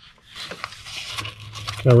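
Soft rustling and scraping of handling noise as an AR-style pistol is lifted and turned over an open nylon backpack. A man's voice starts just before the end.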